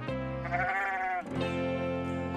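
A sheep bleating once, a wavering call from about half a second in lasting under a second, over steady background music.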